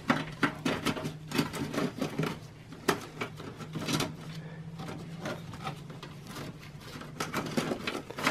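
Power-supply cables being handled and tucked inside a metal PC case by a rubber-gloved hand: an irregular run of small clicks, rustles and knocks of plastic connectors and wires against the case.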